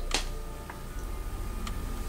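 Quiet room with faint, evenly spaced ticking and one sharper click just after the start, over a faint steady hum.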